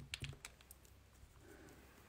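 Near silence: low room tone, with a few faint clicks in the first half second.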